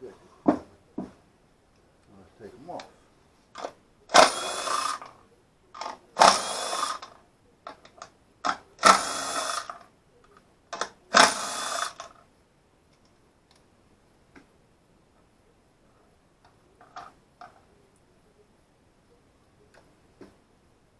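Power drill driving screws into a wooden board: four whirring bursts of about a second each, two to three seconds apart, with light clicks and knocks of handling between them.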